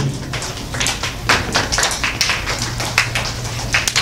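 Scattered clapping from a few people in an audience, an irregular run of sharp claps.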